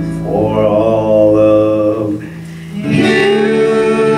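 Live Hawaiian worship music: acoustic guitars strummed under sung vocals, dropping briefly a little past the middle before the band comes back in on a full chord.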